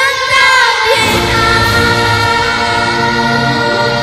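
A children's choir singing with musical accompaniment. The voices slide through a run of notes in the first second, then hold one long note.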